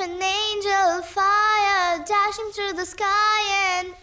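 A high child's voice singing a slow melody in several phrases of long held notes with a slight waver, broken by short breaths.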